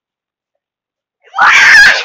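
A child's short, very loud scream, about half a second long, near the end.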